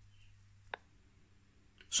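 Near silence with a faint low hum, broken by a single short click about three quarters of a second in, where the hum stops.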